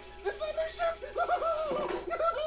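Beaker, the Muppet lab assistant, meeping: a rapid run of short, high, nasal "meep" calls, each one rising and falling in pitch.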